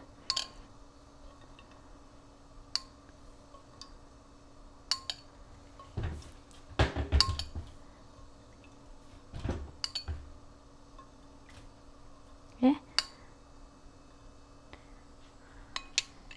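A metal spoon clinking and scraping against a small ceramic bowl while vegetable oil is spooned into a non-stick skillet: scattered light clinks, with a few louder clatters about six to ten seconds in.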